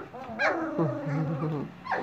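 Standard poodle puppies about two and a half weeks old whimpering and yipping, with one drawn-out whine that wavers in pitch and stops about a second and a half in.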